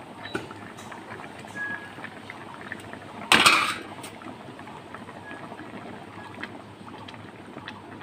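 Katla fish curry boiling in a wok, a steady bubbling with small pops. A little over three seconds in there is a brief loud clatter, about half a second long.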